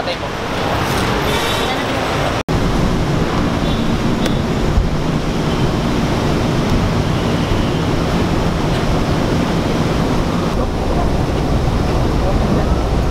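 Steady rumble and hiss inside a packed MRT commuter train car, with a low murmur of passengers. The audio drops out for an instant about two seconds in.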